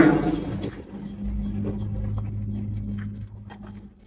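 Steady low motor hum, engine-like and unchanging in pitch, with a few faint clicks over it.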